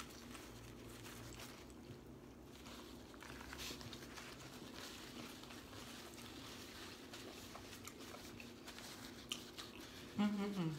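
Faint chewing and biting of sub sandwiches, with scattered soft clicks and light crinkles of the paper sandwich wrap.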